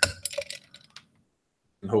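A few light clinks in the first second: dried juniper berries being dropped into a highball glass with ice.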